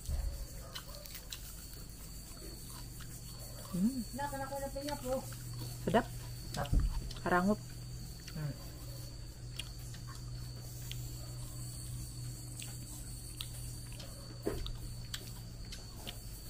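Chewing a crisp deep-fried cicada: faint crunches and mouth sounds, with a woman's voice murmuring and saying "sedap" in the middle, over a steady low hum.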